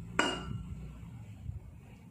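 A stainless-steel bowl clinks once against a glass mixing bowl just after the start, with a brief ring. Softer handling bumps follow as chopped tomatoes are tipped from it into the glass bowl.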